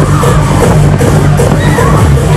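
Loud music with a steady beat and heavy bass, played over a Break Dance fairground ride's sound system.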